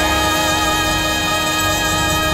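Live big band music: the saxophone and brass sections hold a sustained chord over bass and hand percussion.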